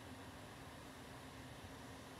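Quiet room tone in a hushed church: a steady hiss with a faint low hum and no distinct sounds.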